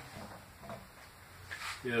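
Faint scrapes and light knocks of a homemade metal table saw fence being lifted off its steel rail, a few soft handling sounds spread through the moment.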